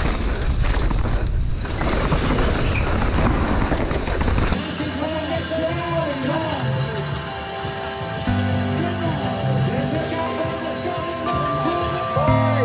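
Helmet-camera sound of a downhill mountain bike run: wind rushing over the microphone with the bike rattling over the rough trail. About four and a half seconds in it cuts off sharply to music with held tones and a stepping bass line.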